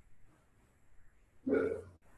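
Low room noise, then one short vocal sound from a man about one and a half seconds in, lasting under half a second.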